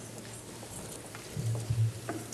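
Hearing-room background: a steady low hum with faint scattered clicks, and a few soft low thumps in the second half, the loudest just before the end.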